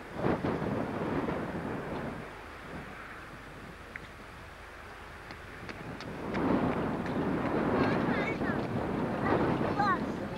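Wind buffeting a camcorder microphone, swelling in gusts at the start and again over the second half, with faint voices in the background.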